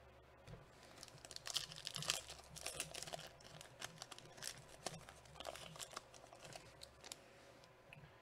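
Shiny foil wrapper of a Bowman Chrome card pack crinkling and tearing as it is opened by hand: a run of rapid crackles lasting about five seconds, dying away near the end.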